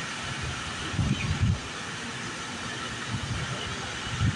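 Steady outdoor city background noise, with low rumbling swells about a second in and again near the end.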